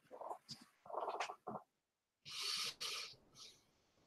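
Faint, indistinct voice sounds over a video-call link: a few short murmured syllables, then a breathy, hissing burst about two and a half seconds in.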